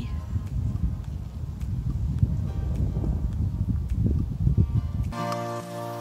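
Strong wind buffeting the microphone, a gusty low rumble. About five seconds in it gives way abruptly to background music.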